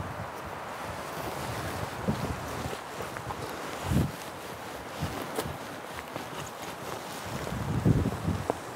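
Wind blowing across the microphone: a steady rush with several short low buffets.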